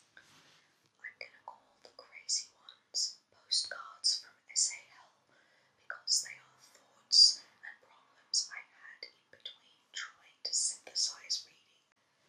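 A woman whispering in short phrases broken by brief pauses.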